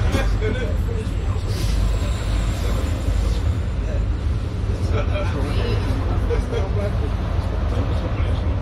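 Steady low rumble inside a stationary Volvo B5LH hybrid double-decker bus, with indistinct passenger chatter and road traffic passing outside.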